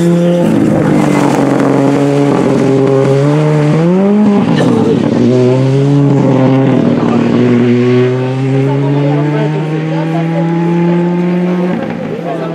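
Rally car engine at high revs on a gravel stage. Its pitch holds, dips briefly, sweeps up sharply about four seconds in and falls back as the throttle lifts, then climbs steadily again. The level drops slightly in the last few seconds as the car pulls away.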